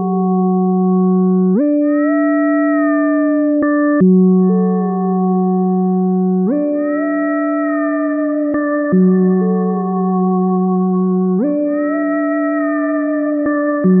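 Logic Pro X's Alchemy synthesizer, an additive-engine patch stripped to its core sound, alternating between two sustained notes, F and C, about every two and a half seconds. At each note change the upper harmonics slide a little in pitch while the fundamental holds steady.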